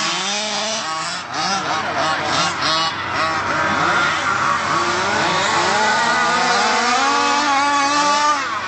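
Several 1/5-scale HPI Baja 5B SS petrol RC buggies racing, their small two-stroke engines revving up and dropping back again and again in overlapping, rising and falling whines.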